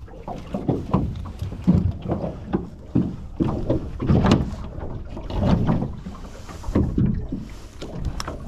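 Water slapping irregularly against the hull of a small boat, with a few sharp knocks from handling the landing net and fish on the deck, the sharpest about four seconds in.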